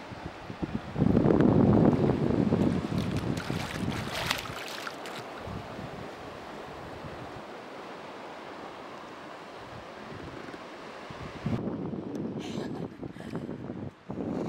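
Water splashing and churning as a swimmer beside a boat's bow ducks under and dives down, loudest for a few seconds about a second in. Then a steady rush of wind and water, and splashing again near the end as she comes back up to the surface.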